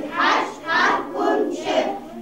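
A group of young children singing together in unison, loud phrases in a steady beat about two a second.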